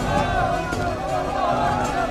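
Film soundtrack music mixed with a crowd's many overlapping voices. The voices fall away near the end, leaving the music.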